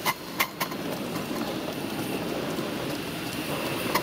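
Miniature 0-6-2 steam locomotive running along its track with a steady running noise, its wheels clicking sharply over rail joints: three clicks in the first second and another near the end.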